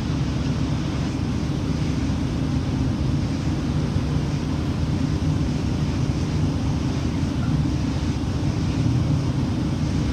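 Steady low rumble of wind on the microphone, with a faint hiss above it and no breaks.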